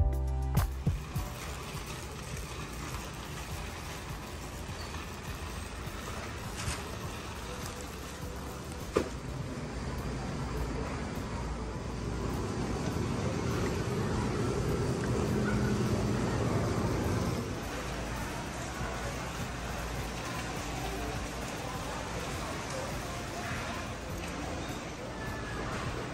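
Background music ending just after the start, then steady store ambience with shopping-cart wheels rolling on a concrete floor, louder for a few seconds in the middle. A single sharp click about nine seconds in.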